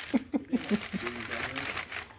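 A woman laughing in short bursts, with brown kraft packing paper crinkling and rustling as she unwraps an item by hand.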